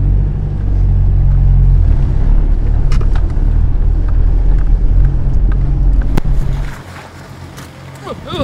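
Ford Ranger pickup's diesel engine pulling away and driving past on a muddy, slushy track: a steady low rumble that drops away sharply about seven seconds in, with a couple of brief clicks along the way.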